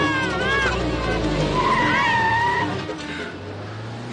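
A car brakes hard: an engine rumble and about a second of tyre screech before it stops. Background music is heard in the first moments.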